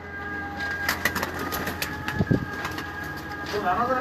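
Domestic pigeons cooing, with scattered light taps and scuffs.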